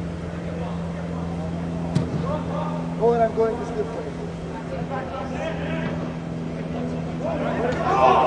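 Steady hum of the air-supported dome's inflation blowers, with a sharp knock of a ball being struck about two seconds in. Players shout briefly a second later and again near the end.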